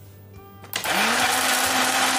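Countertop blender switched on under a second in, its motor spinning up and then running steadily as it blends rice pudding with milk, yogurt and berries.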